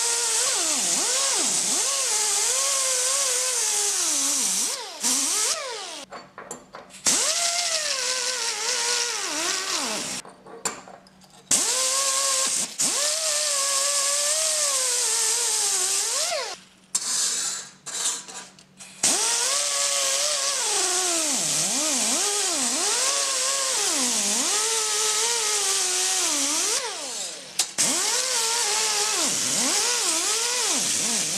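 Pneumatic angle die grinder with a small sanding disc whining at high speed on thin steel plate, deburring plasma-cut letters, with a loud air hiss. Its pitch dips again and again as the disc is pressed into the metal and picks back up as it lightens. The tool drops out briefly a few times, near the 5, 10, 17 and 27 second marks.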